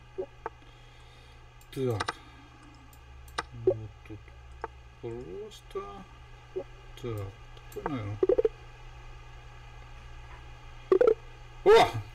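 A steady buzzing hum made of several even tones, with scattered sharp clicks and a few short mutters from a man's voice. The clicks come as pieces are moved in a fast online chess game. The hum stops shortly before the end.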